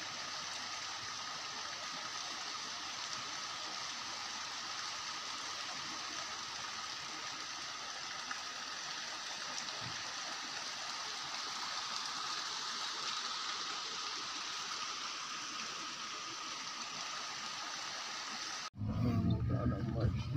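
Steady rush of a stream flowing over a rocky bed. It cuts off abruptly shortly before the end.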